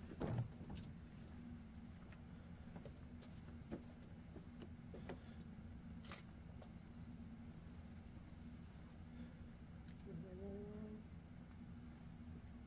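Steady low hum of a quiet surveillance-room recording, with a thump just at the start. A few sharp single clicks follow from a camera photographing a person, and a voice gives a brief murmur near the end.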